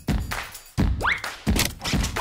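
Playful background music with a regular beat of sharp percussive knocks and a short rising whistle-like glide about a second in.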